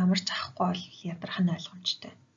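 Speech only: a person talking in a lesson voiceover.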